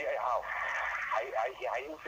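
Speech only: a person talking in a radio interview, the sound thin and narrow like a radio broadcast.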